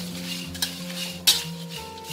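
A metal spatula stirring and scraping cut dried red chilies around a metal wok as they dry-roast. The chilies rustle steadily, with a sharper scrape against the wok about half a second in and a louder one just past a second in.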